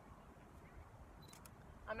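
Camera shutter firing twice in quick succession, a pair of sharp clicks about 1.3 s in, just after a short high beep.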